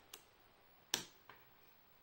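A USB-C plug pushed into the socket of a small USB-C Power Delivery trigger board, seating with one short sharp click about a second in, after a fainter tick near the start.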